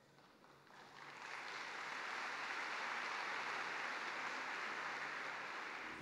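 Audience applauding, swelling over the first second and then holding steady.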